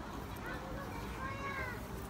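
A faint, short high-pitched call that rises and then falls in pitch, about one and a half seconds in, over low steady outdoor background noise.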